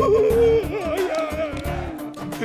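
Background music: a steady held drone and a regular low beat under a wavering, ornamented vocal line that wobbles up and down in pitch.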